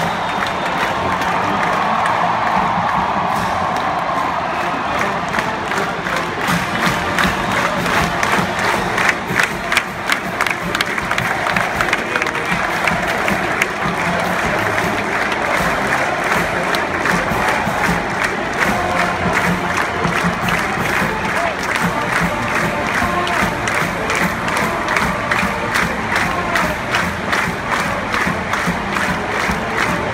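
A marching band playing in a stadium with a large crowd cheering and shouting over it. A held chord in the first few seconds gives way to a steady, fast beat that runs on to the end.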